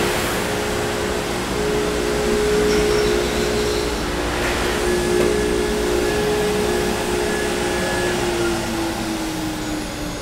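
Avid CNC router running as it finishes slotting a 1/8-inch aluminum plate with a single-flute end mill, its spindle whine and dust-collection suction steady and loud. About eight seconds in, the spindle's whine falls in pitch as it winds down.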